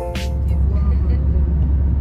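The tail of a short musical intro jingle cuts off a moment in, and a steady, deep rumble of road and engine noise inside a moving car takes over.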